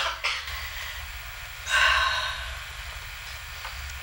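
Short breathy sounds from a person: a sharp intake of breath at the start and a longer sighing exhale about two seconds in, over a steady low hum.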